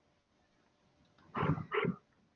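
About a second and a half of quiet room tone, then two short voiced sounds in quick succession near the end.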